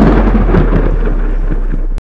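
Thunder sound effect: a rolling, crackling rumble following a heavy boom, easing slightly toward the end.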